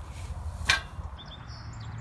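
Outdoor ambience: a low rumble of wind on the microphone, a single short sharp swish or click about two-thirds of a second in, then small birds chirping in short high notes.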